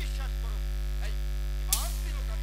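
Steady electrical mains hum carried through the stage sound system, with a single sharp click near the end.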